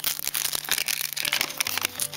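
Clear plastic shrink-wrap crinkling and crackling as it is torn along its perforated strip and peeled off a tin Poké Ball.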